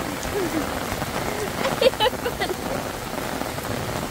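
Heavy rain falling steadily, pattering on the umbrella held overhead.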